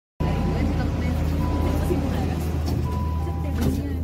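Delhi Metro train running, a steady low rumble inside the carriage, with passengers' voices over it.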